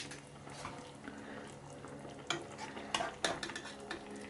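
A metal spoon moving lamb chops in a simmering stew, knocking lightly against the pan a few times, with the sharpest clicks near the start and in the last second and a half. A faint steady low hum runs underneath.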